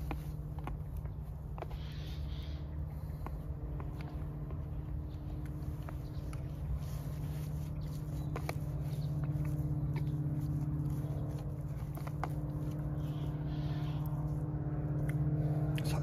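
Spoon scraping and clicking in a foil food pouch while eating, with chewing, over a steady low hum.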